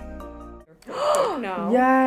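Background music stops, then a woman gasps and lets out a long, drawn-out "ohh" of delight on seeing her freshly filled lips in a hand mirror.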